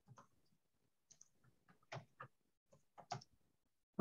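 Near silence with a handful of faint, scattered clicks.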